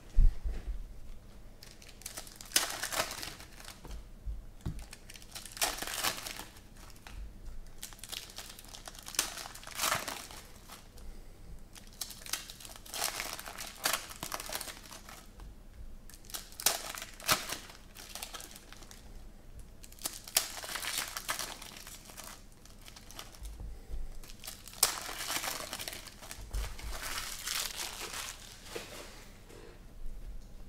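Foil trading-card pack wrappers crinkling and tearing as packs are ripped open by hand, in repeated bursts a second or two apart.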